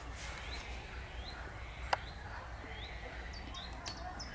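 A bird calling a short rising note over and over, roughly once every 0.7 seconds, with a few quicker, higher chirps near the end. A single sharp click about two seconds in is the loudest sound.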